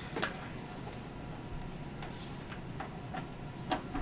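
Quiet handling of a plastic karaoke machine as it is turned around on a table: a few faint clicks and knocks, one near the start and one near the end, over steady low room noise.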